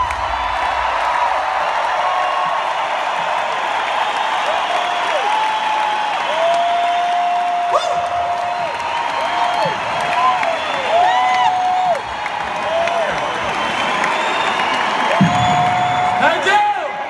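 A large arena crowd cheering and applauding, with many individual whoops and long held shouts rising and falling over the steady roar, just after the band's music stops.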